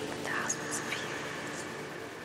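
Outro of a dark progressive psytrance track: sparse sound design with breathy, voice-like textures over a low sustained drone, a falling sweep shortly after the start and a few brief high chirps.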